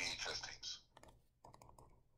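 A person's voice briefly at the start, then about a second of faint, quick clicks.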